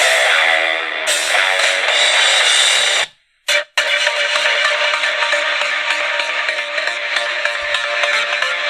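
Music played through the VT-16 radio kit's speakers: a guitar-driven rock track cuts off about three seconds in, and after a brief silence an electronic track starts.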